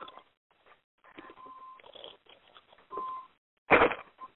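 Open telephone conference line: scattered faint rustling noise, two short steady beeps about a second apart, and a brief loud burst of noise near the end.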